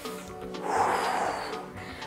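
Background music with one breath out, a noisy rush lasting about a second that starts about half a second in, from someone exercising.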